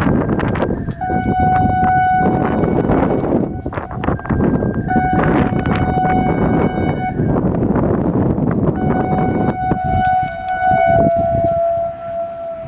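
ASC I-Force electronic warning siren sounding an alternating two-tone alert: a short higher tone, then a longer lower tone, repeating about every four seconds. Near the end a second, lower steady tone joins in. Loud wind buffets the microphone throughout.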